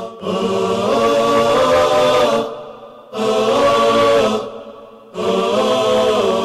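Closing theme music of chanted vocals: voices holding long sung notes in phrases, breaking off briefly twice.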